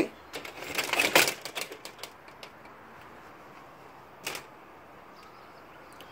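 Front door being unlatched and opened: a run of clicks and rattles from the latch and handle in the first couple of seconds, then a single sharp click about four seconds in.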